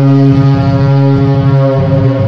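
A loud, sustained low synthesized drone with many overtones, a single held note that opens a cinematic trailer's music.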